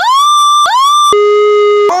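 Electronic sound effect of three tones: two short tones that each swoop up and then hold, followed by a lower, longer held tone that stops abruptly.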